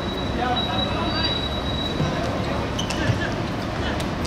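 Steady open-air background noise on a football pitch with faint distant voices, and one sharp knock about three seconds in, a football being kicked.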